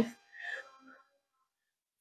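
A woman's faint, brief breath-like vocal sound about half a second in, between counted reps of a floor exercise, followed by near silence.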